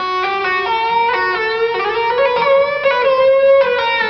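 Electric guitar with distortion playing a single-note legato phrase in B harmonic minor, the notes changing quickly. A longer held note in the middle wavers slightly in pitch from small whammy-bar dips of about a quarter tone.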